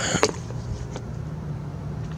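A steady low hum, with a couple of short clicks just after the start.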